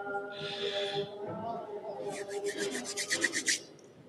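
A person's hands rubbing together near a microphone. There is a short scrape early on, then a quick run of dry rasping strokes, about nine a second, that stops shortly before the end.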